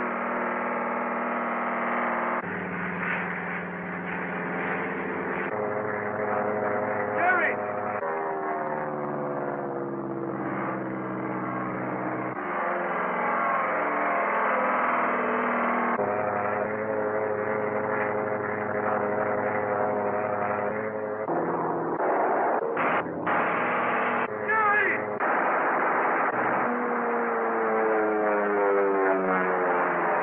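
Biplane engines droning on an old film soundtrack, the pitch changing from shot to shot and sliding down in long falls as planes dive past. Short bursts of machine-gun fire come about three-quarters of the way through.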